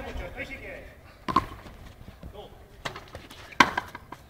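Frontenis rally: a rubber ball is struck by a stringed racket and hits the fronton wall, giving sharp, short impacts. Two loud hits come about a second in and again a little over three and a half seconds in, with a softer one between them.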